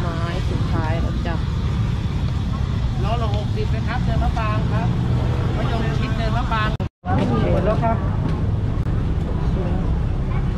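Night street-market ambience: several people talking at the stalls over a steady low rumble. The sound cuts out completely for a moment about seven seconds in.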